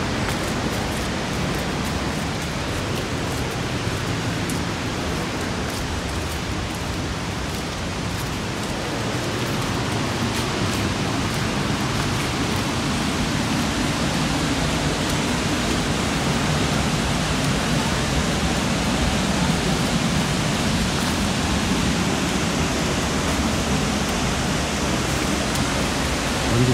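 Dunhinda Falls heard from the approach path: a steady rushing hiss of falling water that grows somewhat louder over the second half, with a few faint clicks in the first seconds.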